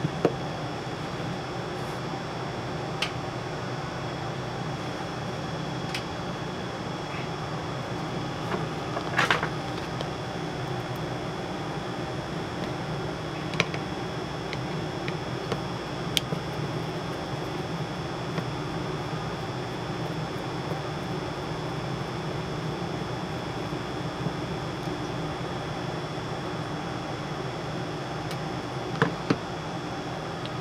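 Steady mechanical hum, like a fan, with a few scattered light clicks and taps of small screws and parts being handled while an ebike controller board is taken apart.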